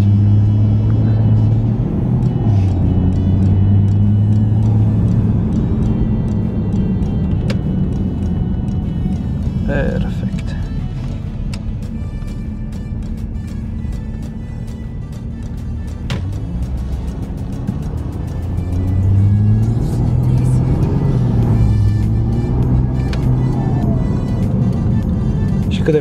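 Porsche Panamera 3.0-litre V6 diesel engine and exhaust heard from inside the cabin while driving: a steady low drone whose pitch climbs and dips several times near the end as the car accelerates. Background music plays over it.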